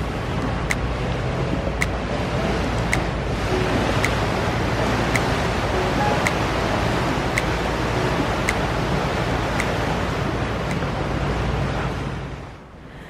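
A motorboat's engine running with a steady low drone while water rushes along the hull, with some wind on the microphone. A faint tick repeats about once a second.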